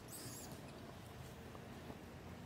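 Faint high-pitched animal squeaks in the first half-second, over steady low background noise.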